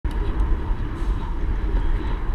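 Wind buffeting a bike-mounted action camera's microphone, over the rumble of bicycle tyres rolling on concrete; a steady, fluttering noise.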